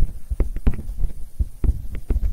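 A pen stylus tapping and clicking on a tablet surface while handwriting digits. The taps are short, sharp and irregular, about three or four a second, each with a low thud.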